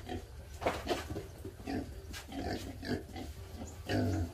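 A group of hungry pigs grunting, many short grunts overlapping, with a few sharper squeaks among them.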